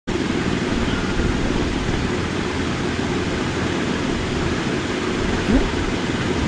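Handheld hair dryer blowing steadily, a loud even rushing of air aimed at the hair.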